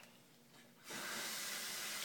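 A steady hiss starts abruptly about a second in and keeps going.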